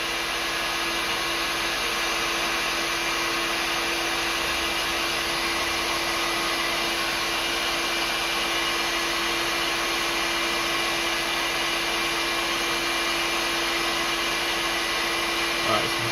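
Heat gun blowing steadily with an even rush of air and a constant hum, heating an aluminium-backed PCB until the fresh leaded solder on the LED pads melts.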